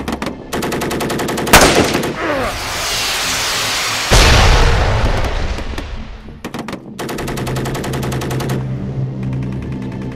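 Film battle sound effects: a burst of rapid automatic rifle fire, then a loud explosion about a second and a half in with a long hiss of falling debris, and a second, deeper explosion with a low rumble about four seconds in. Another rapid burst of rifle fire comes about seven seconds in, over background music.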